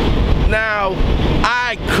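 A man's voice in short utterances over a steady low rumble.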